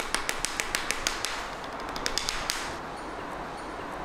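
Wooden StarSticks drumsticks played fast on a knee-mounted practice pad, a quick run of sharp taps several a second that stops about two and a half seconds in.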